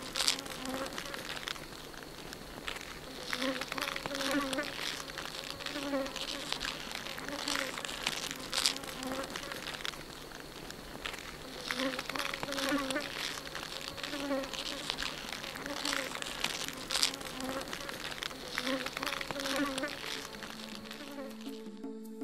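Dense chorus of forest insects, a high hiss full of fine ticks, with a low warbling call repeating in short runs every two or three seconds. A sustained music chord comes in near the end.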